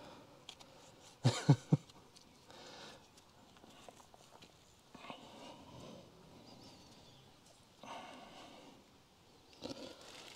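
A man laughing: three quick, short chuckles about a second and a half in, with only faint, soft sounds after them.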